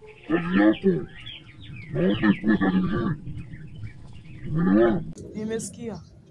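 A woman's voice making wordless vocal sounds in three short bursts, the pitch bending up and down, followed by a brief rapid raspy rattle near the end.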